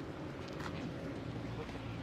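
Outdoor street ambience, a steady low hum with a few faint knocks, as a group of people walks across an intersection.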